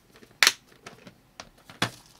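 Sharp plastic clicks and knocks of a clear hinged plastic compartment box being handled and set down: a loud click about half a second in, a couple of lighter ones, and another loud click near the end.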